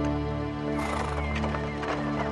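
Soundtrack music with a horse's hooves clip-clopping from about a second in, and a horse whinnying.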